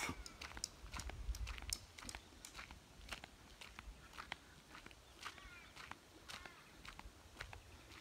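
Footsteps crunching on a dirt track as the person filming walks along, heard as scattered soft clicks, with a faint low rumble and a couple of faint high calls about five seconds in.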